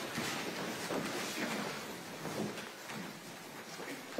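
A pause in a women's choir rehearsal: quiet room noise with faint rustles and shuffling, and no singing.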